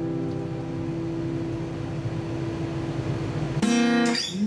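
Steel-string acoustic guitar chord ringing out and slowly fading, then a new chord strummed sharply near the end.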